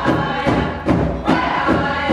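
A group of women singing a chant in unison over a steady drum beat, about two and a half beats a second.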